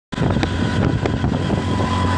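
Steady low rumble of a running vehicle-type engine, with wind buffeting the microphone and a few light knocks in the first second.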